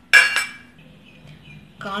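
One sharp clink of stainless steel kitchenware knocking together, ringing briefly and dying away within about half a second.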